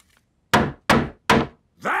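Hammer striking a wooden floorboard three times in quick, even succession, each blow a sharp knock that dies away fast: hammering down a squeaky floorboard to fix it.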